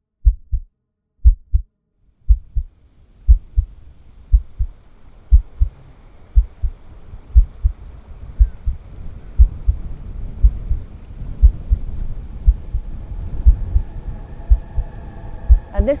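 Heartbeat-like sound effect: pairs of low thumps about once a second. A steady noise fades in beneath it from about two seconds in and keeps growing louder.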